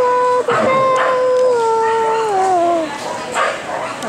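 A dog howling: a short held note, then a long one of over two seconds that slides down in pitch near its end, followed by quieter cries.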